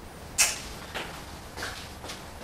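Handling noise on the camera: a sharp creak or click about half a second in, then two fainter ones.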